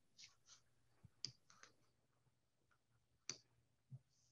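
Near silence with a few faint, short clicks, the clearest about a second in and near the end.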